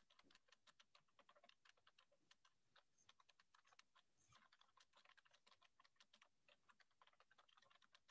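Near silence, with faint quick clicks at several per second.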